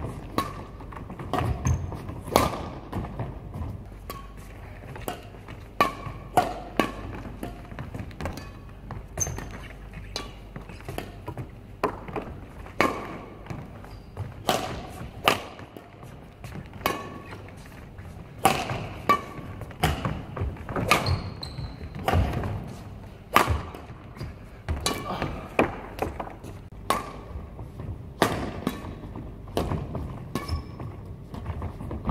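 Badminton rally in a sports hall: sharp cracks of rackets, one a Yonex Duora 10, hitting the shuttlecock at an irregular pace of about one to two a second, echoing in the hall, with thuds of the players' footwork on the court.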